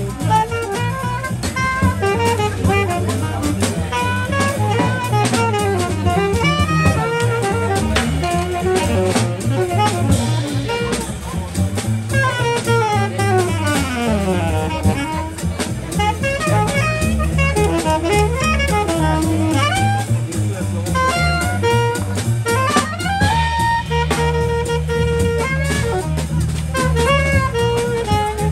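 Live jazz combo: a saxophone plays the lead line over piano, upright bass and drum kit, with a fast run down and back up about midway.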